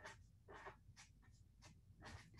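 Faint pen strokes on paper: a few short, soft scratches of handwriting.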